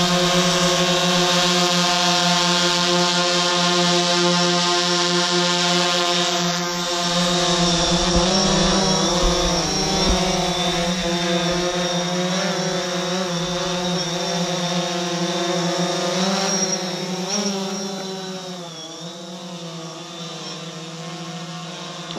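DJI Phantom 4 quadcopter's propellers and motors hovering close by with a steady buzz. From about eight seconds in the pitch wavers up and down as the motors change speed. Near the end the buzz grows fainter as the drone climbs away.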